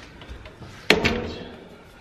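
Wooden hotel room door pulled shut with a single sharp bang about a second in, which rings on briefly as it dies away.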